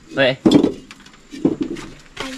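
Hollow clay bricks clinking and knocking against one another as they are stacked into a wheelbarrow, between short bits of speech.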